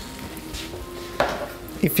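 A single metal clank on a stainless frying pan about a second in, ringing briefly, over a quiet background.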